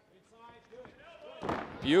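A fighter's body hitting the ring canvas with a thud near the end, as he is swept off his feet. Faint shouting voices come before it.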